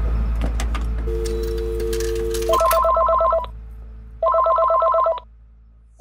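A telephone line: a few clicks, a steady two-note dial tone for about a second and a half, then a phone ringing twice with a rapid electronic trill, each ring about a second long. A low drone runs underneath.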